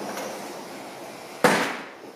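One sharp footstep on a hard tiled floor about one and a half seconds in, over a steady background hiss.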